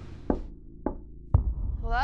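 Three sharp knocks about half a second apart, each louder than the last; the third comes with a deep boom that keeps rumbling. A short vocal sound follows near the end.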